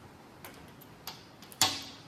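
A few light metallic clicks and taps as a lifter, pushrod and rocker arm are handled and set against an engine block. The sharpest tap comes about one and a half seconds in.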